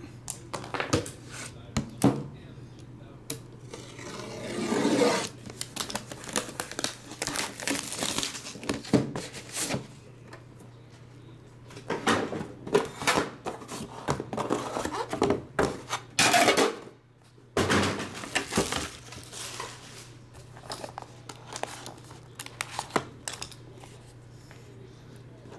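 Plastic shrink-wrap being torn and crinkled off a cardboard trading-card hobby box, in several noisy stretches, with many short clicks and knocks as the box and its inner box are handled and opened.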